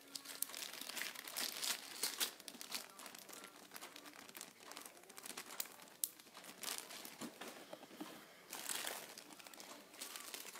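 Plastic wrapping crinkling and rustling in irregular bursts as a piece of costume jewelry is handled and unwrapped, with scattered small clicks.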